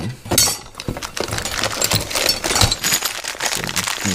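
Metal parts of a topside creeper kit clinking and rattling in their cardboard box as a hand rummages through them: steel caster brackets, casters and bagged bolts knocking together in a quick, uneven string of small clinks.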